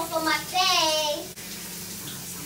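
A child's high voice singing a wavering note, cut off abruptly about 1.3 seconds in. It is followed by a steady hiss of running tap water.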